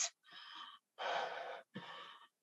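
A woman breathing heavily in three short, breathy gasps, each about half a second long, heard over a video-call link.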